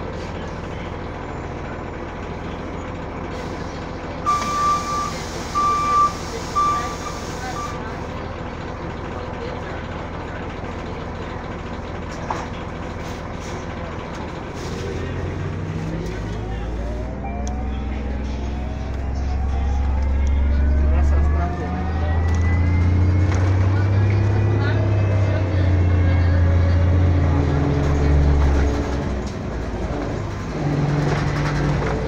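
Orion VII hybrid-electric city bus heard from inside the cabin, idling with a steady low hum. About four seconds in there is a run of short beeps over a hiss of air. From about fifteen seconds in the bus pulls away, and its electric drive whines steadily upward in pitch as the low engine note rises.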